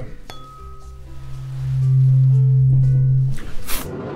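A 128 Hz tuning fork with weighted tines is struck with a rubber-headed mallet about a third of a second in. It gives a single low, steady hum that swells louder about a second in, then cuts off suddenly a little after three seconds. A short burst of noise follows.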